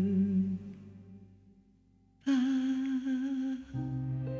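A woman's voice humming slow held notes with vibrato in a ballad recording. The first note fades away about a second and a half in and a brief near-silent pause follows. Then a new held note begins, with the instrumental accompaniment coming back in near the end.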